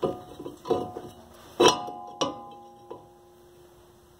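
New cast-iron brake rotor knocking against the wheel hub and studs as it is slid into place. There are about five metal knocks, each followed by a short ringing tone, and the loudest comes about a second and a half in.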